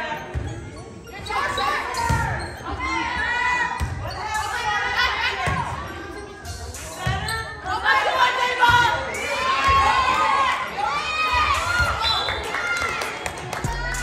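Volleyball rally in a gym: several irregular thuds of the ball being hit and striking the floor, under many overlapping girls' voices shouting and cheering.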